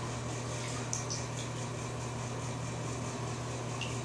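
Steady indoor room noise with an even low hum and a couple of faint clicks.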